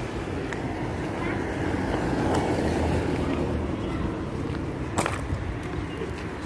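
Street traffic noise, a car passing that swells to its loudest around the middle and fades again, with a sharp click about five seconds in.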